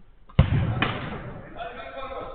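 A football struck hard on an artificial-turf pitch: one sharp thud, a second weaker knock about half a second later, then men's voices calling out.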